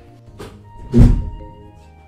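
A single deep, heavy thud about a second in, over soft background music with a held tone.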